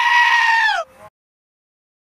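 A long, high-pitched animal bleat that holds steady, then drops in pitch and cuts off abruptly about a second in.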